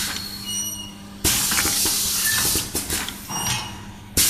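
Rotary cup filling and sealing machine running with a steady low hum and light mechanical clicks. About a second in, a loud hiss of compressed air from its pneumatic system sounds for about a second and a half, then drops away.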